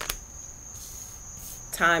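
A tarot card laid down on a wooden table with a sharp click at the start, then a soft swish of cards about a second in, over a steady high-pitched trill.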